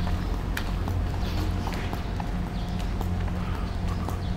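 Footsteps on a paved street, about two a second, over a steady low hum.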